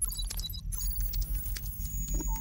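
Intro sound effect of a computer keyboard typing: a quick run of key clicks over a deep, pulsing bass.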